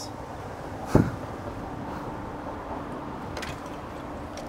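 Steady low background hum, with one short thump about a second in.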